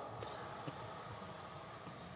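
Faint background noise with a few soft clicks.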